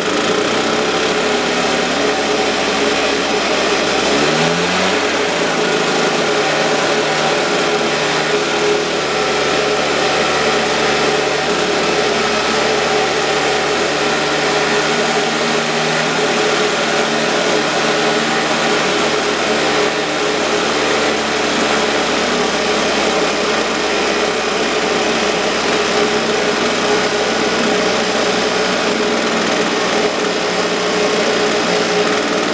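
Husqvarna 150BT leaf blower's two-stroke engine, freshly rebuilt with a new piston and cylinder, running at idle while its generic aftermarket carburettor is adjusted with a screwdriver. The engine speed picks up about four seconds in and then holds steady.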